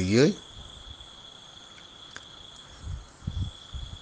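A steady high-pitched trill runs on unbroken through a pause in a voice, dipping briefly about three seconds in. The voice's last word ends just after the start, and a few soft low sounds come near the end.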